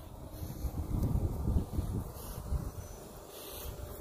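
Wind noise on the phone's microphone: an uneven low rumble with no other clear sound.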